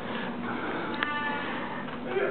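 Television audio from a cartoon playing across the room: faint voices and sound, with a sharp click followed by a short held tone about a second in.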